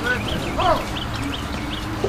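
A bird chirping in a quick series of short, high calls, about three a second, with one brief lower call about halfway through.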